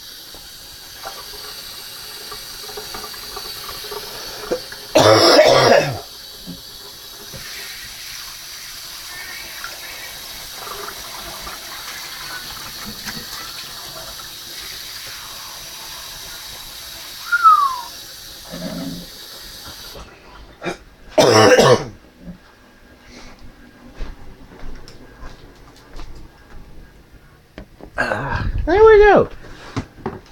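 Cold water running from a tap into a pet's water bowl as a steady hiss, shut off suddenly about two-thirds of the way through. There are two loud coughs, one about five seconds in and one just after the water stops.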